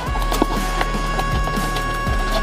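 Background music: a wordless stretch of a rap track, a held synth tone over deep bass with a knocking beat about twice a second.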